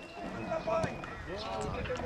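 Faint shouting voices on an outdoor football pitch during play, with a single thud of a football being kicked a little before one second in.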